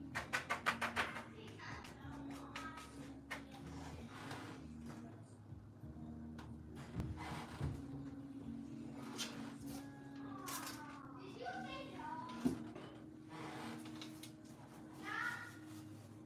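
A quick run of about eight rubbing strokes in the first second as a paper towel is scrubbed over wet paint on a sketchbook page. After it comes faint background music with a steady low note, faint voices about ten and fifteen seconds in, and a single tap a little after twelve seconds.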